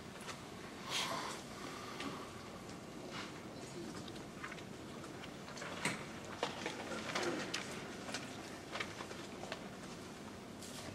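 Hushed room with a seated audience: faint room tone dotted with small clicks, knocks and rustles, with a brief louder rustle about a second in and a cluster of small sounds a little past the middle.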